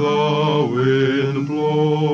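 A group of male voices singing in close harmony, holding long chords that shift every half second or so.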